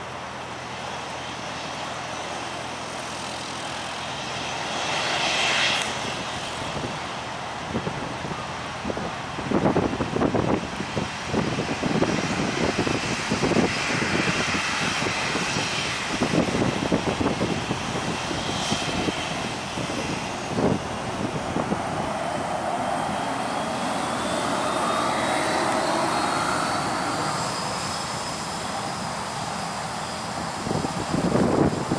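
Jet engines of a taxiing Boeing 737-700 running at low power, a steady jet noise. A thin whine rises slowly in pitch over the last several seconds, and irregular low rumbles come and go through the middle.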